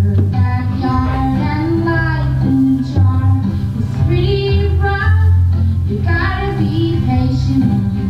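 Recorded song with a steady, heavy bass line and children singing.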